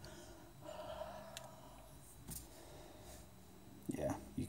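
A person huffing a soft breath onto a phone's glass screen to fog it, one exhale of about a second starting about half a second in, followed by a faint click of handling.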